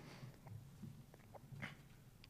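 Near silence: faint room tone with a low hum and a few faint small clicks.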